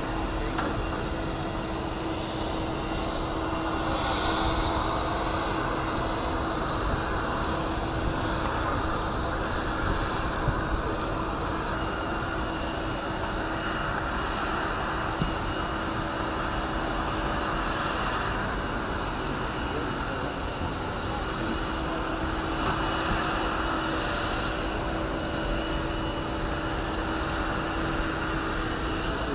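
Steady whine of jet aircraft engines running, several high unchanging tones over a continuous rushing noise, with a crowd's voices chattering underneath.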